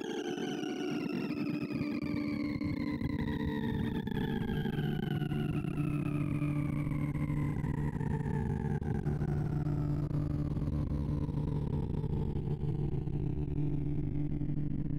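Sorting-visualizer tones: rapid electronic beeps, one for each array access, blur into a continuous buzz. A stack of pitches slides slowly and steadily downward the whole time over steady low hums, as smoothsort draws ever smaller values off the shrinking unsorted heap.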